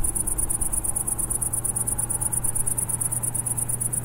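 Crickets chirping in a fast, even, high-pitched pulse, over a low steady hum.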